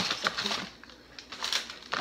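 White packing paper in a cardboard box rustling and crinkling as it is handled, with a loud crackle right at the start and lighter rustles after.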